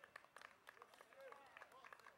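Faint, distant shouts of players calling out on the pitch, with several sharp clicks among them.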